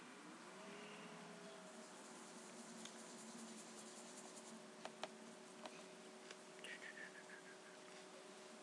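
Near silence: faint room tone with a steady low hum, and a few light clicks and taps scattered through the middle.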